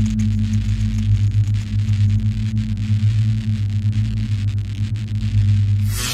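A steady low electronic drone with a hiss over it, the sound bed of an end screen.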